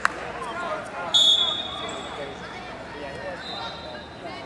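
A referee's whistle blows one loud, steady high note about a second in, starting the wrestlers from the neutral position, and fades out over the next second. A fainter whistle sounds near the end, over the babble of voices in a large hall.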